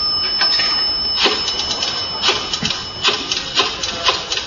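Typewriter keys clacking in irregular quick bursts, a radio drama sound effect of a newsroom or press room.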